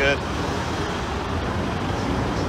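Steady low engine rumble of fire engines running at the kerb, over a haze of street noise.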